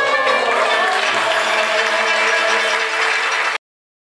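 A choir with kanun, oud and violin holds the final notes of a Turkish song while audience applause rises. The sound cuts off abruptly about three and a half seconds in.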